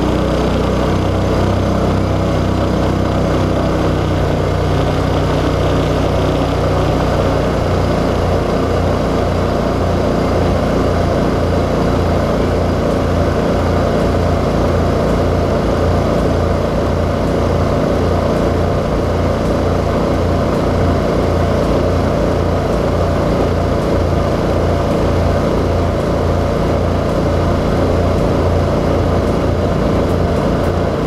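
Mud Buddy surface-drive mud motor running steadily under load, pushing the boat at speed. A loud, even engine drone with a slow regular beating, over the rushing hiss of the prop's spray.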